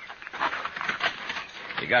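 Radio-drama sound effects of a halted stagecoach and its horse team: a run of shuffling, scuffing and clattering, with faint noises from the horses, as passengers climb aboard.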